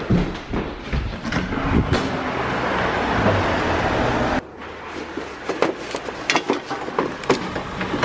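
Footsteps and camera-handling knocks over a steady outdoor street-traffic noise that stops abruptly a little past halfway. After that come scattered short footsteps and knocks on a wooden porch.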